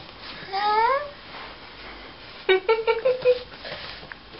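A baby girl's high-pitched vocalizing: a single rising squeal about half a second in, then a quick run of short, choppy squeals a little past the middle.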